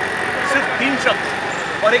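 Voices of people talking in the background over steady street traffic noise; a man starts speaking near the end.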